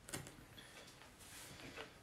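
Near silence: faint room tone with a couple of soft ticks, one just after the start and one near the end.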